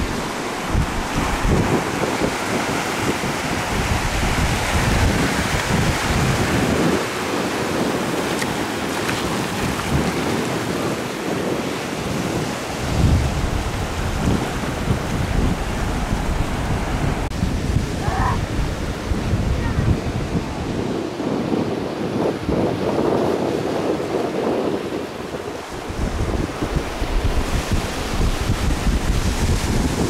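Ocean surf breaking and washing over a rocky shore, with gusts of wind buffeting the microphone in low, uneven rumbles.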